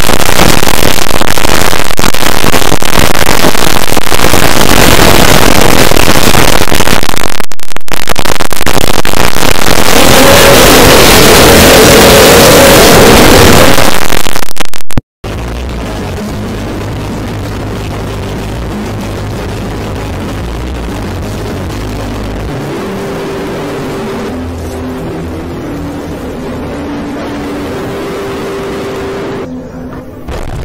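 Extremely loud, harshly distorted noise filling every pitch, which cuts off abruptly about halfway through. It is followed by a quieter, noisier stretch with a few held low tones.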